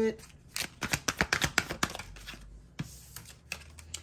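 A deck of tarot cards being shuffled by hand: a quick run of card flicks lasting about a second and a half, a short pause, then a few more flicks near the end.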